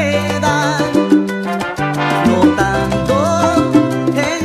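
Salsa music playing: a bass line stepping between held notes under pitched instruments and steady percussion strokes.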